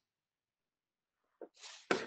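Dead silence on the video-call line for about a second and a half, then near the end a short breathy noise from a participant's microphone, ending in a sharp click.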